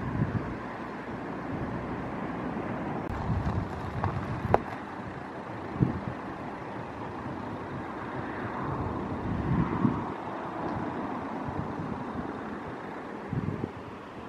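Wind buffeting the microphone outdoors: a steady, gusting rumble of noise, with two sharp clicks a little before the middle.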